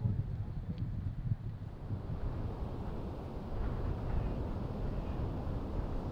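Wind buffeting an outdoor microphone: a steady low, gusty rumble.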